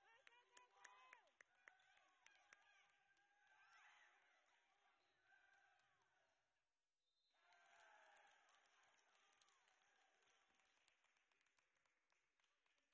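Faint, muffled basketball game in a gym: distant voices and court noise, with sharp taps in the first few seconds. The sound cuts out briefly just past halfway.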